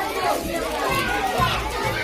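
A roomful of children talking at once, several voices overlapping in a chatter that echoes a little in the hall-like room.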